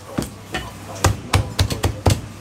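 A cleaver chopping a cooked Zhanjiang chicken into pieces on a thick round wooden chopping block: a string of sharp chops that come faster in the second half.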